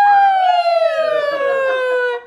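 A woman's long, cheering "woo!" whoop. It swoops up in pitch at the start, then slides slowly down for about two seconds before breaking off.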